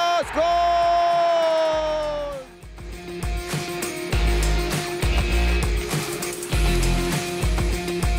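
A football commentator's long, drawn-out shout of "gol!", held for about two seconds and slowly falling in pitch. It breaks off, and background music with a heavy, regular bass beat follows.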